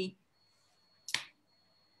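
A single sharp click, like a snap, about a second in, in an otherwise quiet pause; a faint steady high tone runs underneath.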